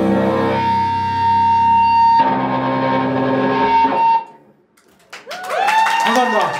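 Distorted electric guitar letting a final chord ring out with a held high tone, cutting off suddenly about four seconds in as the song ends. After a second of near silence, sharp strikes and sliding tones start up near the end.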